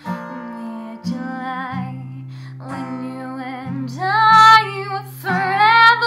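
A teenage girl singing while accompanying herself on an acoustic guitar, the guitar sounding sustained chords under her voice. About four seconds in her voice rises and grows louder, holding long notes.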